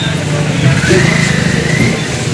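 Motor scooter engine running close by, a steady low hum, amid the chatter of a crowd.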